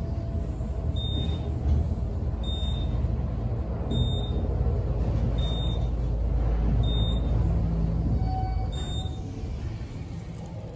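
Otis elevator car travelling down, a steady low rumble of the moving car. A short high-pitched beep sounds about every one and a half seconds as each floor passes. The rumble eases near the end as the car slows.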